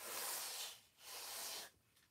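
An adhesive stencil sheet being peeled away from a surface twice, two soft hissing strips of sound of under a second each. She is fuzzing the stencil to take off some of its tack.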